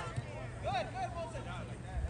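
Indistinct voices calling out across a playing field, with no clear words, over a low steady rumble.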